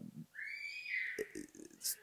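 A brief high-pitched squeak that rises and then falls in pitch, lasting just under a second, in a pause between spoken words.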